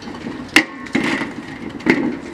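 Camera handling noise: clothing rustling against the microphone, with two sharp knocks, about half a second in and near the end.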